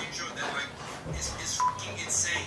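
Voice with a short, high electronic beep, one steady tone lasting about a fifth of a second, a little past halfway through.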